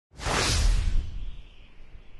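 Logo-reveal whoosh sound effect with a deep rumble underneath, starting suddenly and dying away within about a second into a faint lingering tail.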